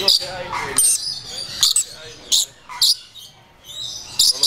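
Lories giving short, high-pitched calls, about five in all, spread across the few seconds.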